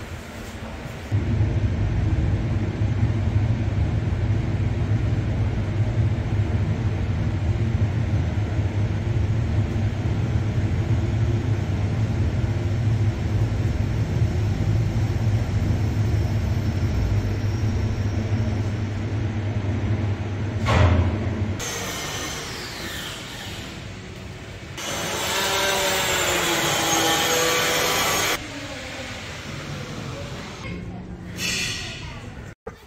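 Johnson high-speed passenger elevator cab ascending: a steady low hum and rumble starts suddenly about a second in and runs for about twenty seconds, ending with a thump as the car stops.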